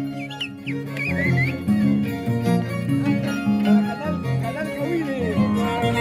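Andean harp and violin playing a lively dance tune, the harp's plucked bass notes stepping under the violin's wavering melody.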